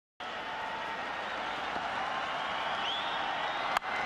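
Steady din of a large cricket stadium crowd, with a faint whistle and a single sharp click near the end.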